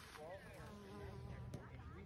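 A flying insect buzzing faintly, with faint voices in the background.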